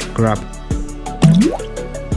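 A rubber toy crab going into foamy bathwater with a short rising bloop about a second in, over background music. A brief voice is heard at the start.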